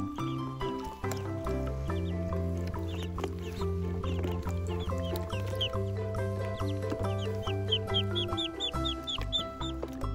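Background music with a steady bass line, with high-pitched duckling peeps that start about halfway through and come in a quick run of about five a second near the end.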